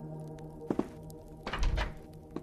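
Two thuds from a person climbing in through a window, a short knock a little before one second in and a heavier, deeper thump near the end, over soft background music.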